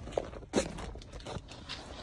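Irregular scuffs and crunches of someone shifting over a dirt-and-gravel crawl-space floor, mixed with rubbing from the handheld phone, with a sharper knock about half a second in.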